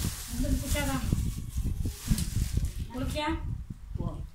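Fried chicken being bitten and chewed close to the microphone: a crackly, hissy crunch in the first second, then irregular small knocks of chewing and handling, with a few brief voice sounds.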